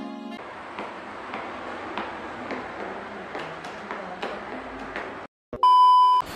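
A held background-music chord breaks off, leaving a few seconds of faint hiss with light ticks. Near the end, after a brief cut to silence, a steady high test-tone beep sounds for about half a second: the colour-bars tone of a video transition effect.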